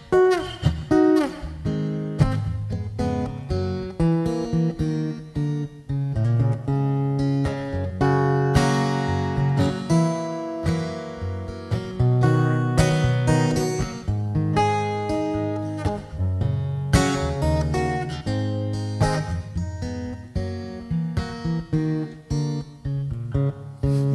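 Solo steel-string acoustic guitar played live, picking a continuous melodic instrumental break with no singing.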